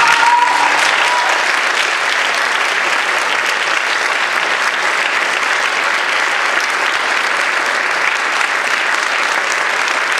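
Audience applauding steadily, the last held note of the music fading out in the first second.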